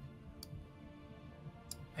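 Two faint clicks of a computer mouse, one about half a second in and one near the end, over a faint steady background.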